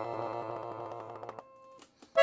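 Pancordion Baton piano accordion played softly: a held low note under a quick run of treble notes, dying away about one and a half seconds in. A brief click follows near the end.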